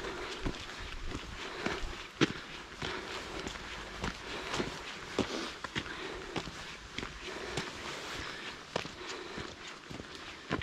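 Footsteps walking at a steady pace on a wet dirt track, a little under two steps a second.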